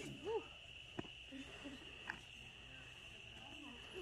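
A short whooping 'woo' from a person at the start, then a quiet lull filled by the steady high-pitched trill of crickets, with two faint clicks.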